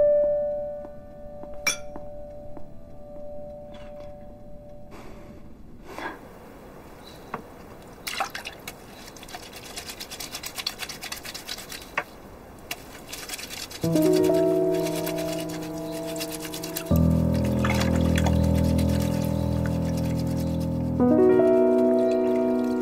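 Water sloshing and splashing as cloth is hand-washed in a wooden tub, heard over background music: a piano note fades out at the start, and sustained chords come in loudly about two-thirds of the way through.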